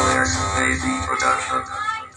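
Electronic dance music with a singing voice, played loud through speaker boxes and subwoofer cabinets driven by a Kevler GX7 amplifier during a sound check.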